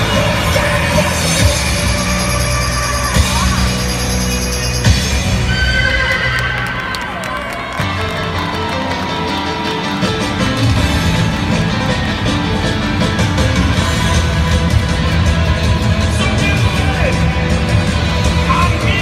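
Upbeat music played loudly over a stadium PA. About five seconds in, the music breaks for a horse whinny sound effect, and then a new passage with a steady beat starts.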